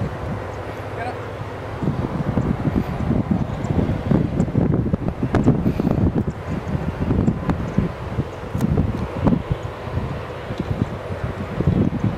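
Wind buffeting the camera microphone: an uneven, gusty low rumble throughout, with indistinct voices under it.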